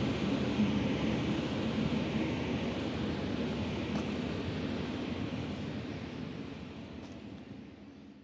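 Steady wind noise rushing over a handheld microphone outdoors, fading out over the last couple of seconds.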